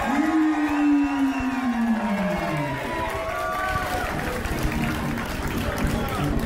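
A ring announcer's long, drawn-out call, falling steadily in pitch over the first three seconds, followed by music with crowd noise.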